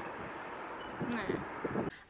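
Steady wind noise rushing on the microphone outdoors, with a woman saying a soft "yeah" about a second in; it cuts off abruptly near the end.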